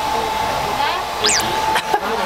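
A steady, loud whirring motor noise with a thin high whine, the whine stopping just before the end. Partway through, a short whistle-like tone glides sharply up and back down.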